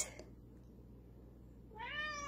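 A domestic cat meows once near the end, a single drawn-out call, in answer to being spoken to.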